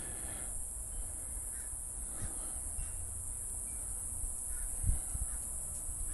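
A few faint, short bird calls in the background over a low, steady hum, with one brief low thump a little before the end.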